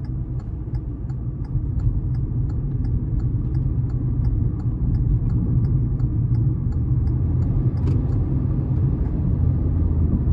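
2021 Kia Rio's 1.6-litre four-cylinder engine and tyre noise heard from inside the cabin, growing slowly louder as the car gathers speed in sport mode, which holds the revs higher than normal. A light ticking, about three a second, runs under it and fades out about two-thirds of the way through.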